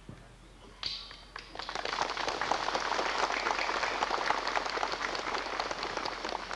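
Audience applause: a few claps about a second in, quickly filling out into steady clapping.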